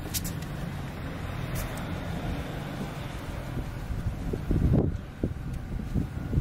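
A steady low engine hum with a swell of road noise in the middle, like a vehicle going by, and a few rough gusts of wind on the microphone near the end.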